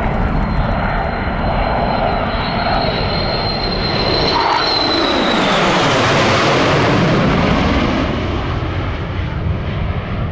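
Two F-4E Phantom IIs passing overhead, their J79 turbojets giving a high whine that drops in pitch about five seconds in as they go by. The jet noise is loudest just after the pass and eases as they fly away.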